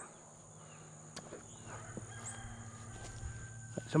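Quiet outdoor ambience: a steady high insect drone with faint chicken calls and a few soft clicks.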